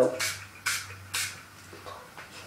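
Hairspray sprayed onto hair in three short hissing bursts, about half a second apart.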